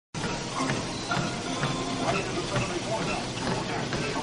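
Steady background noise with faint, indistinct voices.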